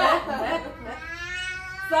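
Women laughing, then one long, drawn-out, high-pitched vocal cry that dips slightly and rises in pitch toward the end.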